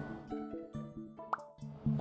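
Soft background music with held notes, and one short rising plop-like blip about a second and a half in.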